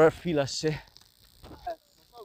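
Insects chirring steadily in a high band, with a man's voice speaking briefly at the start and a few faint short calls later.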